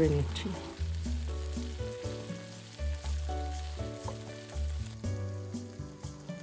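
Chopped onion, sweet potato and red kidney beans sizzling in olive oil in a nonstick wok as a spatula stirs them, under background music with a bass line.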